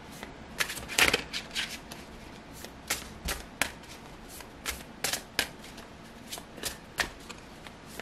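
A tarot deck shuffled by hand, packets of cards lifted and dropped overhand. The cards give irregular soft slaps and clicks from about half a second in, roughly one or two a second, the loudest near the start.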